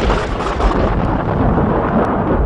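Thunder sound effect: a rolling rumble, heaviest in the low end, slowly fading.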